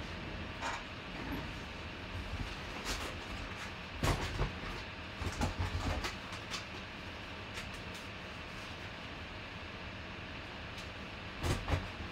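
Cardboard card boxes and packs being handled and shifted: scattered knocks and rustles, a cluster of them around four to six seconds in and another near the end, over a steady low hum.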